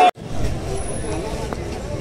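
Street ambience: a steady low rumble of road traffic with faint voices. Loud crowd shouting cuts off abruptly at the very start.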